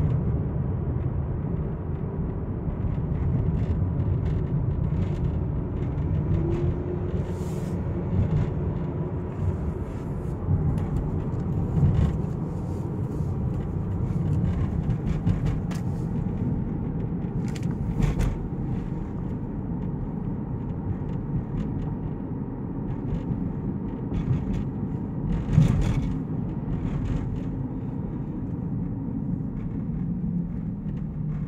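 Kia car's engine and road noise heard from inside the cabin while driving: a steady low rumble. A few short knocks or clicks come through, the loudest late on.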